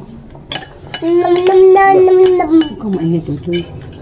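Metal spoons and forks clinking on plates during a meal. About a second in, a high voice holds one long note for about a second and a half, the loudest sound here, followed by a lower voice making short sounds.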